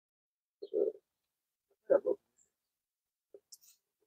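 Mostly silence, broken by two short, quiet vocal hums from a man hesitating, about a second in and again about two seconds in.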